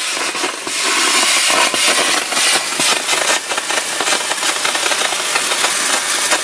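Homemade Tesla turbine running on boiler steam: a steady, loud hiss of escaping steam with a fast, rough flutter through it.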